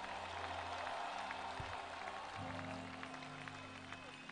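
A congregation clapping their hands together as applause, heard faintly, over soft sustained music chords that change a little over halfway through.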